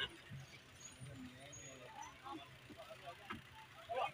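Faint cabin sound of a passenger bus: a steady low engine hum, with indistinct passenger voices and a few small knocks.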